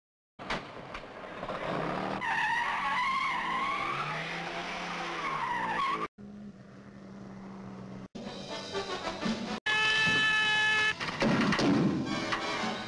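Car sounds from a 1950s film soundtrack: tyres squealing with a wavering pitch for a few seconds, then a car engine running. The passage is broken by sudden cuts, with a steady blast near the end.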